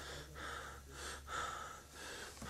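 A man panting hard and gasping, with quick, rasping breaths in and out, about two a second.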